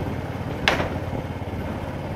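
Small motorbike engine running steadily at low speed as it rolls along, with one brief sharp high sound about two thirds of a second in.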